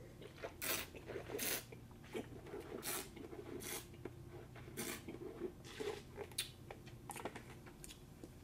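Red wine being tasted: a series of short, sharp slurps as air is drawn through the wine in the mouth, with swishing, and the wine spat into a spit bucket partway through.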